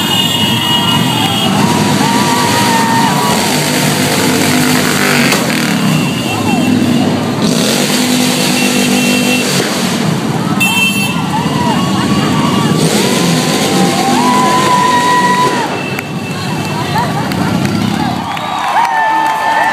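Parade motorcycles, mostly cruisers, riding slowly past with their engines running, over a crowd of voices and shouts.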